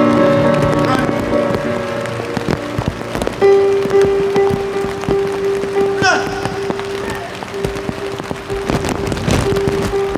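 Live reggae band music in heavy rain: a held chord gives way about three seconds in to one long sustained note, with a short vocal call about six seconds in. Rain crackles steadily on the canopy and microphones throughout.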